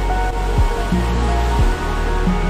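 Background music: sustained tones over a low beat that falls about once a second.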